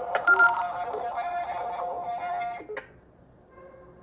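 Push-to-talk radio handsets beeping as a transmission ends: a click and short electronic beeps, then a steady tone with faint relayed audio from a radio speaker. This cuts off with a short burst about two and three-quarter seconds in, leaving only low hiss.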